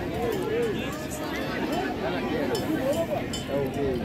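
Background chatter: several people talking at once, their voices overlapping, with no single clear speaker.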